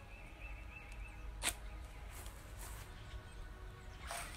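A single sharp snap about a second and a half in, as a stretched rubber band launches a flying tube made from plastic water bottles, over low wind rumble on the microphone. Faint high chirping in the first second.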